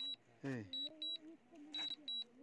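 DJI Mavic drone remote controller beeping: short high double beeps about once a second, the alert it gives while the drone is flying itself back on return-to-home.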